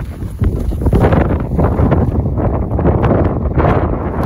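Wind buffeting the microphone: a loud, low, rough rush that swells about half a second in and stays up.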